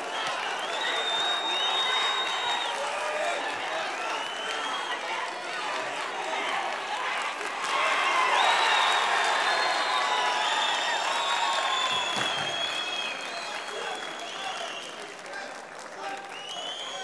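Arena crowd shouting during ground fighting in an MMA bout, with high drawn-out calls over the noise. About eight seconds in, as the referee steps in to stop the fight after a choke, the crowd swells into cheering and applause, then slowly dies down.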